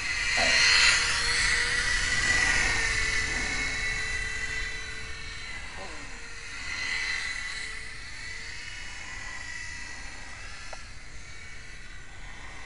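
The small brushless electric motor and propeller of a FlyZone PlayMate micro RC airplane, whining high as it flies past overhead. It is loudest in the first few seconds as it passes close, swells again about seven seconds in, then fades, with its pitch rising and falling as it passes and turns.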